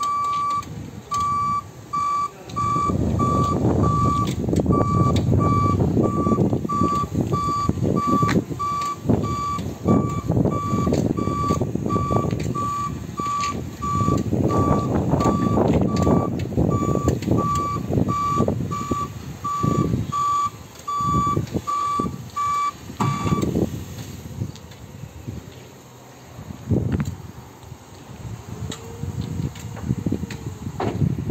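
Electric reach truck's travel alarm beeping steadily, about two beeps a second, over the rumble of the truck driving across the yard; the beeping and rumble stop about three quarters of the way in, leaving a few scattered knocks.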